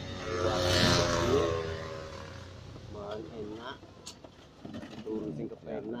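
Indistinct voices of people talking, loudest in the first second and a half and again in the second half.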